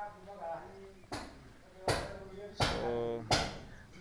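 Four sharp hammer blows in a steady rhythm, about one every 0.7 s, from building work on the house.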